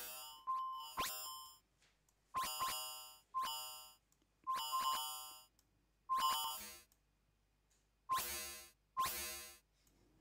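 Bespoke Synth's three-operator FM synthesizer playing a run of short notes that die away quickly, in small groups with brief gaps between them. The modulation amount is being turned up and down, so the tone of the notes keeps changing. The two notes near the end come out buzzier and richer in overtones.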